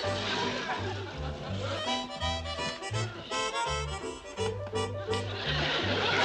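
Background music: a bouncy comedic underscore, with a stepping bass line under a pitched melody.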